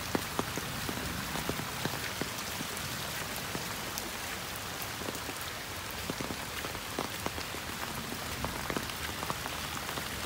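Heavy rain falling steadily, a dense hiss with many sharp ticks of close drops striking.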